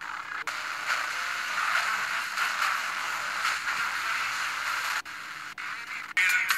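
Inter-station FM static from a Sony Ericsson phone's built-in FM radio as it is tuned between stations: a steady hiss that dips briefly about five seconds in.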